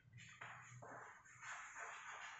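Faint scratching of chalk on a blackboard: a run of short strokes as words are written.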